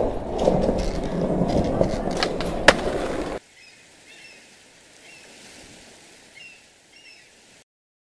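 Skateboard wheels rolling, a rough rumble with scattered clicks and one sharp click near three seconds in, that cuts off abruptly. A much quieter background follows, with a few short high chirps, and it stops shortly before the end.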